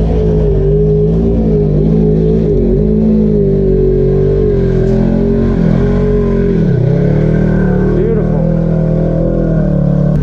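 Polaris RZR side-by-side's engine running at low speed under load as it crawls over roots and rock, its pitch wavering with the throttle. It dips about seven seconds in and then climbs again.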